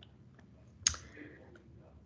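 A single sharp mouse click about a second in, advancing the presentation to the next slide, over faint room tone.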